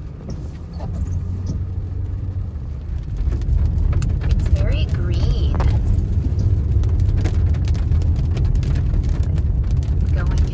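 Car driving slowly along a wet road, heard from inside the cabin: a steady low rumble of tyres and engine that grows louder after about three seconds, with many scattered ticks and taps over it.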